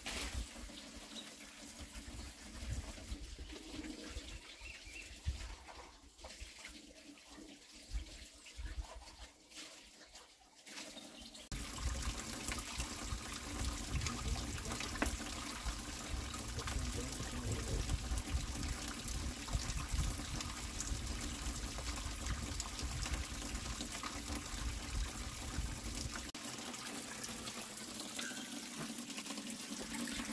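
Water running from a pipe, quieter and patchy at first, then a steady louder rush from about a third of the way in.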